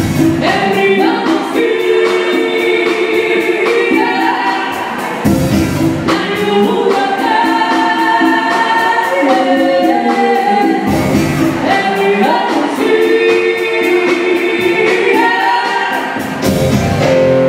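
Live band music: a woman singing lead into a microphone in long held lines, with electric-acoustic guitar and conga drums underneath.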